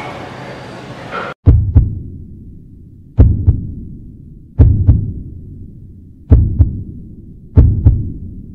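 Heartbeat sound effect: deep double thumps, lub-dub, five pairs about every one and a half seconds, starting about a second and a half in when the room sound cuts out.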